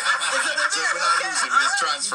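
People laughing and chuckling, their voices overlapping.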